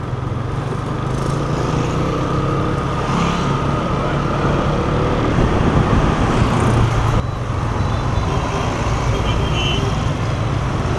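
Motor scooter riding in road traffic: its small engine hums steadily under rushing wind noise on the helmet microphone, with a cut in the sound about seven seconds in.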